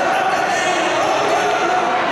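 Racecourse spectators' voices, many people talking and calling out at once in a steady din while the horses run past.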